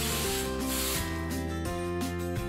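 Aerosol hairspray hissing in two short bursts during the first second, over background music with steady held notes.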